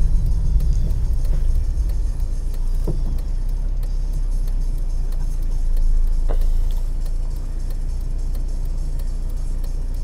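Car interior noise: engine and road rumble as the car slows to a stop, easing after a couple of seconds into the steady low hum of the engine idling.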